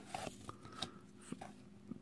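Faint handling of trading cards: a few light clicks and rustles as a card is slid off the front of a hand-held stack and moved to the back.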